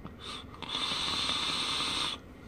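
A long draw on a box mod topped with a rebuildable dripping atomizer: a brief hiss, then a steady airy hiss of air pulled through the atomizer's airflow that lasts about a second and a half and stops at the end.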